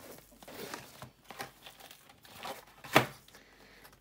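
Rustling and crinkling of a cosmetic pouch and its plastic-wrapped contents and card being handled as the bag is opened, with a single sharp click about three seconds in.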